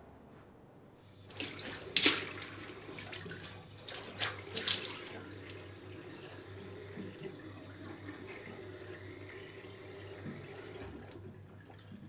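Water running from a tap into a bathroom sink, with several sharp splashes in the first few seconds, the loudest about two seconds in. The flow then runs steadily and stops near the end.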